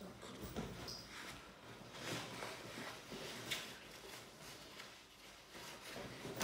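Faint rustling with a few soft knocks and clicks, as small objects are handled off-camera.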